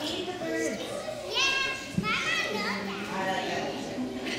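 Young children's voices chattering and calling out in a large room, with two high-pitched child exclamations about a second and a half and two seconds in. A brief sharp knock comes about two seconds in.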